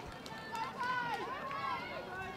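Faint, distant shouts from spectators cheering the runners on in the final straight of the race.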